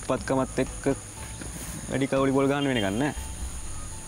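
A man's voice speaking in short phrases of dialogue, with a steady high-pitched insect drone, like crickets, running behind it.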